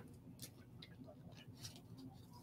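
Near silence: faint room tone with a few soft ticks from sipping water out of a clear plastic cup.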